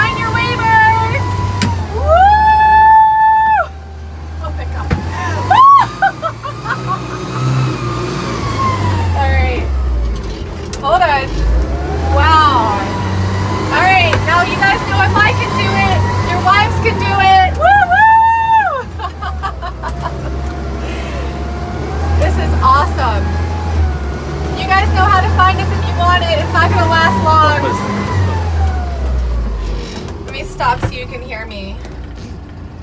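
Steyr-Puch Pinzgauer 710K's air-cooled four-cylinder engine running in first gear as it crawls over rough off-road ground, a low drone that rises and falls with the throttle, heard from inside the cab. Over it come repeated drawn-out vocal cries and exclamations, some held for a second or so.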